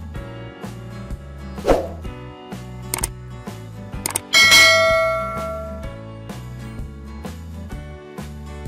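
Background music with a steady beat, overlaid by a subscribe-button sound effect: a short swoosh, a click, then a loud bell ding that rings out for about a second and a half.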